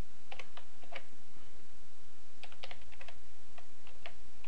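Computer keyboard typing: a short run of keystrokes in the first second, then a longer run from a little past halfway, over a steady background hiss.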